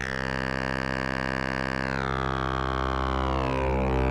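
Cosmotronic Vortex complex oscillator holding a low drone rich in overtones. Its bright upper partials glide downward about two seconds in and again near the end as its controls are moved.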